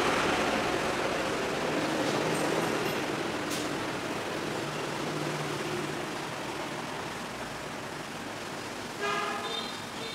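Road traffic noise, a broad rumble and hiss that slowly fades away, with a faint click about three and a half seconds in and a brief voice near the end.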